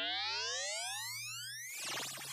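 Synthesizer music intro: a single pitched tone glides steadily upward in a long rising sweep, and just before the end it breaks into a burst of noise with falling tones.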